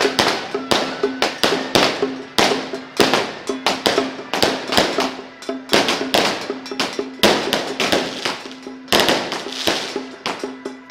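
A loud, irregular run of sharp cracks and crashes, several a second, each ringing off briefly. A steady low tone sounds between them.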